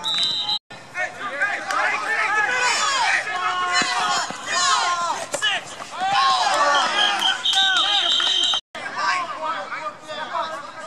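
Players and onlookers at a flag football game shouting over one another during a play. A referee's whistle sounds briefly at the start and again for about a second near the end, after the ball has gone dead on the ground. The sound cuts out twice for a moment.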